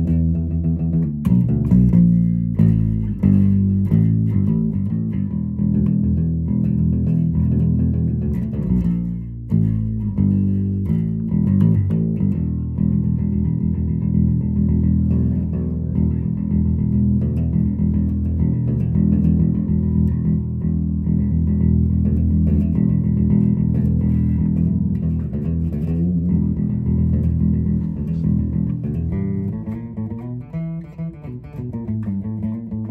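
Gretsch G2220 Electromatic Junior Jet II short-scale electric bass played with a pick through a bass amp, a continuous riff of low notes with no pauses.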